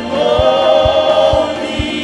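A gospel worship team singing together in harmony, holding long notes, over a steady low beat of about two a second.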